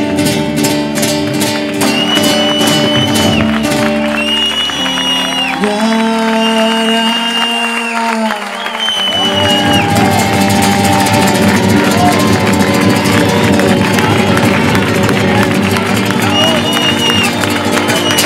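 Live band music: Spanish guitar strummed over electric bass guitar, with held melody notes above, in a flamenco-pop style; the bass drops out briefly around the middle. The audience is clapping along.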